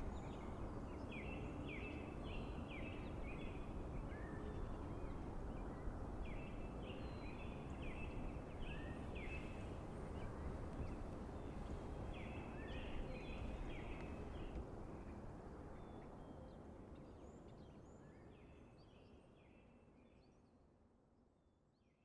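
Outdoor ambience: a steady wash of noise with a bird calling in runs of short, high, repeated notes, about three a second, every few seconds. The whole sound fades out over the last several seconds.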